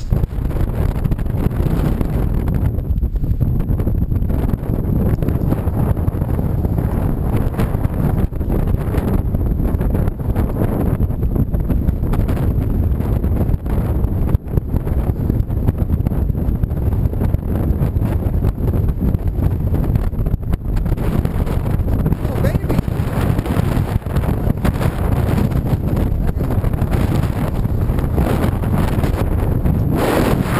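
Wind buffeting the microphone: a loud, steady low rumble with no letup.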